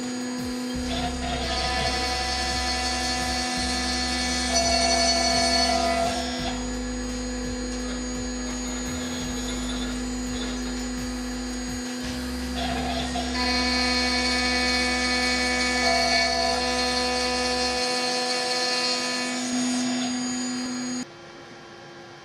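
CNC router spindle running, an end mill facing down a raised boss on a wooden bowl blank: a steady whine of several fixed tones, louder in two stretches while it cuts. It stops suddenly about a second before the end.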